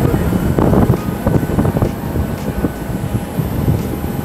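Aircraft running on an airport apron: a steady low noise with thin, steady whine tones above it.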